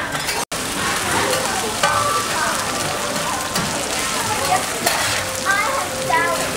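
Batter frying on a large round flat griddle, sizzling steadily, while metal spatulas scrape and clink against the pan. The sound drops out briefly about half a second in.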